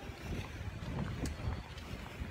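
Wind rumbling irregularly on the phone's microphone, with an even hiss of rain over it.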